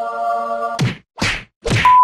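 Intro music with a held chord cuts off into three quick whoosh-and-hit sound effects about half a second apart. Near the end a loud, steady test-tone beep starts, the kind that goes with TV colour bars.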